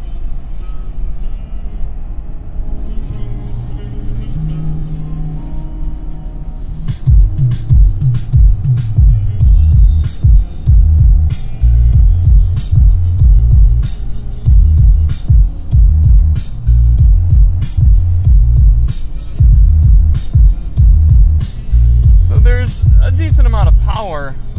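A bass-heavy music track playing through a 2006 Toyota 4Runner's six-speaker factory stereo, heard inside the cabin, with the bass turned all the way up. A quieter opening gives way about seven seconds in to heavy, pulsing bass beats that sound floppy and not crisp.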